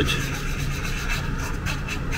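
A wooden stick rubbing and scraping on paper as it works a dab of grease, in quick repeated scratchy strokes.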